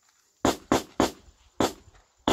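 Handgun fired four times in quick succession during a timed draw-and-fire string: three shots about a quarter second apart, then a fourth after a short pause.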